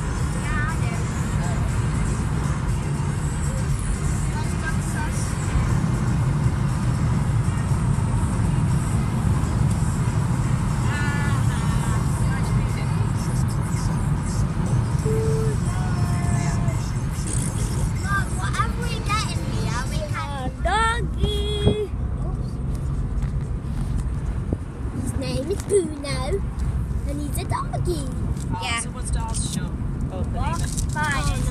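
Steady low rumble of road and engine noise inside a moving car's cabin, with music playing over it.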